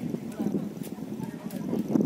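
Voices talking in the background, quieter than the narration around it, with a few light clicks.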